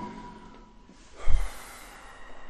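A man's loud breath close to the microphone about a second in, a low thud of air hitting the mic with a breathy hiss trailing off.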